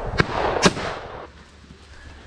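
Two shotgun shots about half a second apart, the second the louder, each trailed by an echo that dies away a little over a second in.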